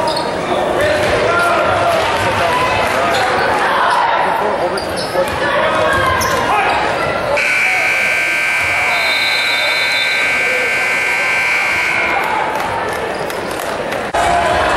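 Gym crowd noise and a basketball bouncing during play, then a scoreboard horn sounds one steady electronic blare lasting about four and a half seconds, the horn that ends a period of play.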